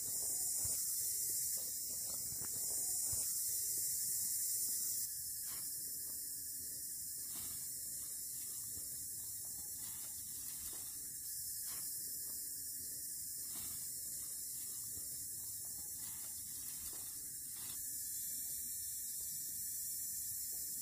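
A steady high hiss with only faint, indistinct sound beneath it; no distinct event stands out.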